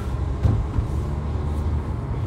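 Low, steady rumble of a car driving, heard from inside the cabin, with a brief thump about half a second in.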